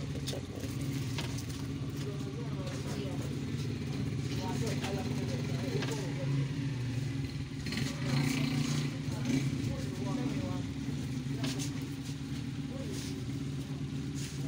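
A steady low motor-like hum runs under faint murmuring voices, with a few light knocks.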